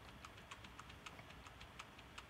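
Faint, irregular taps on a computer keyboard, several light clicks a second, over near-silent room tone.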